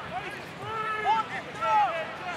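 Speech: voices talking over the steady background noise of a stadium crowd.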